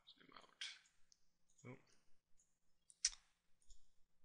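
Faint, scattered computer mouse clicks, the sharpest about three seconds in, as an on-screen image is zoomed out.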